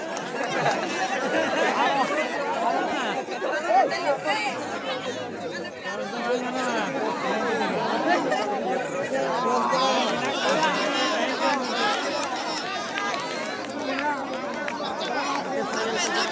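A large crowd of spectators talking over one another: a dense, steady chatter of many voices.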